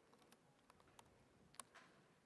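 Near silence with a handful of faint computer keyboard keystrokes as a terminal command is typed.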